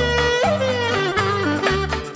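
Greek traditional kalamatianos dance music in 7/8 without singing: a clarinet plays an ornamented, sliding melody over a repeating bass and rhythm accompaniment.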